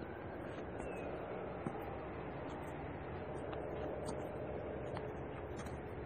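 Steady outdoor background rumble and hiss of distant traffic, with the faint tail of a siren fading out at the very start.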